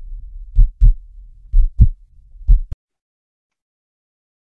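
Heartbeat sound effect: deep lub-dub double thumps about once a second over a low rumble, three beats in all, cutting off abruptly about two-thirds of the way through.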